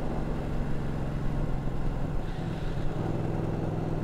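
Ducati 1299 Panigale's L-twin engine running at a steady cruise, its note unchanging, with wind noise on the microphone.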